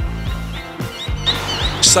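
Background music with a plucked guitar, its notes sounding steadily under the montage; a man's voice starts just at the end.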